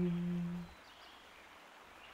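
The last held note of a chant-like sung line, fading out under a second in, followed by a near-silent pause between lines of the song.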